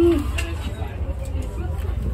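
A glass door being pulled open, with a few faint clicks over a steady low rumble. A short voiced murmur is heard right at the start.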